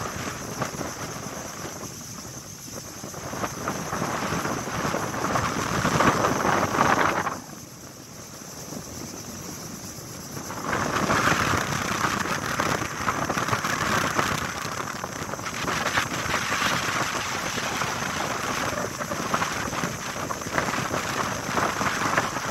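Strong wind gusting across the microphone over choppy sea with waves washing, a steady rush of noise that swells and ebbs; it drops to a lull about seven seconds in and picks up again a few seconds later.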